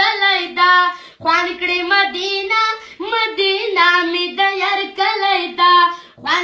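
A child singing a Pashto naat, a devotional song in praise of the Prophet, solo in a high voice with no instruments. Short pauses for breath come about a second in and about three seconds in.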